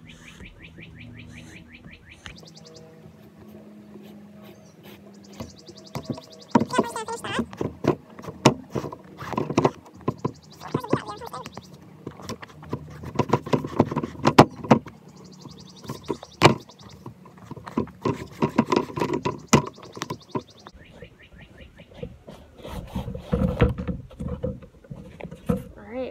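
A flat shoelace being pulled out through the eyelets of a canvas sneaker: several short rasping pulls, mixed with clicks and knocks as the shoe is handled.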